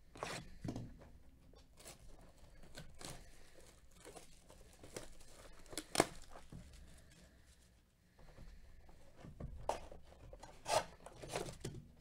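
Plastic shrink-wrap being torn and crinkled off a sealed cardboard box of trading card packs, with handling of the box. It goes as irregular crackles and sharp snaps, the loudest snap about halfway through.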